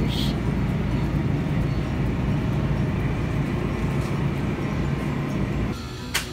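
Steady low rumble of grocery-store background noise with faint murmur, dropping in level shortly before the end.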